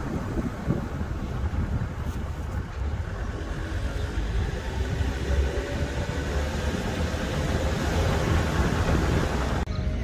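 Wind buffeting a handheld phone's microphone, a heavy uneven rumble over faint outdoor street ambience. The sound changes abruptly just before the end.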